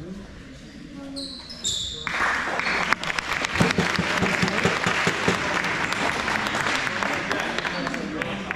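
Clapping and cheering break out suddenly about two seconds in and keep going, with a basketball bouncing on the hardwood court in the middle of it.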